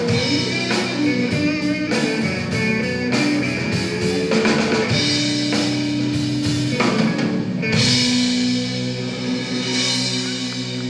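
Live blues-rock band playing electric guitars, bass guitar and drum kit, with repeated drum hits under sustained guitar notes. The band settles into long held notes a little before the end.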